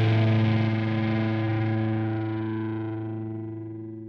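Final chord of a rock song, played on distorted electric guitar, held and ringing out. It fades steadily, the top dying away first.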